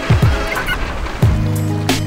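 Background music with a kick-drum beat and held synth tones; a sustained low bass note comes in just over a second in.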